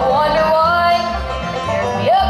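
Live bluegrass band playing: banjo, mandolin, acoustic guitar and upright bass, with a gliding melody line over steady bass notes.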